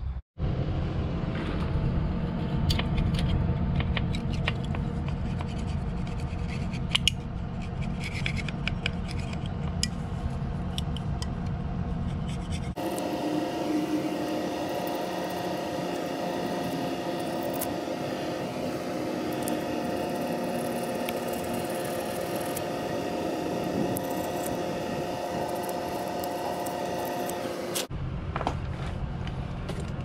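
Razor-blade scraper scraping old gasket residue off the metal hub flange of a semi-trailer wheel, metal rasping on metal. This cleans the sealing surface for a new hubcap gasket. Through the middle part a steady hum sits under the scraping.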